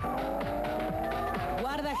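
Electronic music with recurring drum hits under one long sustained note that glides slowly upward. A man's voice comes in near the end.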